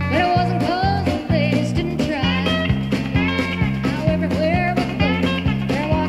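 A live country-rock band playing a song, with a steady bass beat under bending lead lines.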